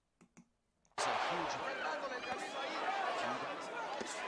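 Two faint clicks. About a second in, the sound of a boxing arena cuts in suddenly: a loud crowd din of many voices, with the thuds of punches landing, heard as a sign of the puncher's power.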